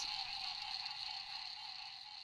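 Swamp ambience: a steady, high insect chorus over a lower steady drone, slowly fading out.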